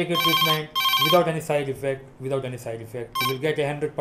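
A telephone ringing in two short bursts in the first second, with a brief third ring a little past three seconds, under a man talking steadily: an incoming call on a phone-in line.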